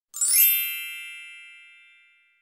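Bright bell-like chime of an intro logo sting. It swells in quickly and then rings out as one sustained chord, fading slowly over about two seconds.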